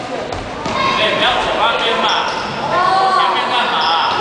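Youth basketball game in an indoor gym: a basketball bouncing on the court and sneakers squeaking as players run, under children shouting.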